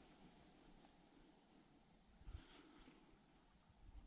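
Near silence: faint outdoor background with one brief, soft sound about two seconds in.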